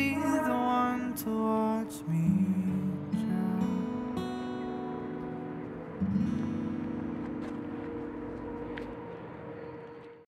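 Acoustic guitar playing the closing bars of a song, with a voice holding its last notes in the first couple of seconds. A final strummed chord about six seconds in rings out and slowly fades.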